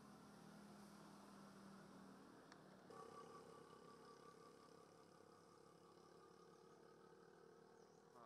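Near silence: faint outdoor background with a low steady hum that shifts slightly in pitch about three seconds in.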